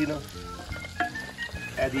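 Wooden spoon stirring chicken pieces in an aluminium cooking pot over a sizzle of frying, with a few sharp knocks of the spoon against the metal.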